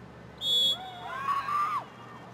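A referee's whistle blown in one short, high blast about half a second in, followed by several voices shouting over one another.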